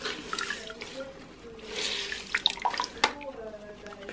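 Water splashing and dripping into a bucket as wet cloth is squeezed and wrung out by hand while it is rinsed, with two splashy bursts, one at the start and one about halfway. A sharp click about three seconds in.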